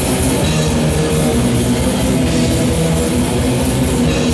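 A heavy metal band playing live: loud distorted electric guitars over rapid, unbroken drumming on a drum kit.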